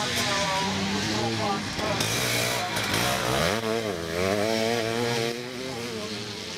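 Motocross bike engine revving and easing off as it rides over the rough track, its pitch rising and falling with the throttle.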